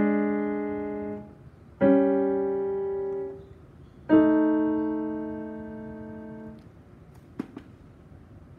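Piano: three left-hand chords, the three left-hand patterns of a 12-bar blues, struck one after another, each held and fading for about one and a half to two and a half seconds before being released. A short click near the end.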